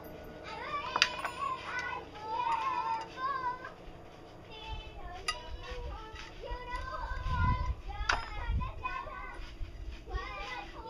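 Children's voices talking and singing in the background, with a few sharp taps of hand tools on the shovel parts, about a second in, near the middle and near the end.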